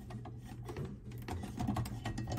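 Small, irregular clicks and ticks of a coaxial cable's threaded F-connector being unscrewed by hand from the back of a cable modem-router.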